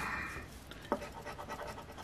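A scratch-off lottery ticket's coating being scraped away with a hand-held scratching tool. A rasping scrape for the first half-second gives way to fainter short scrapes, with a single sharp click about a second in.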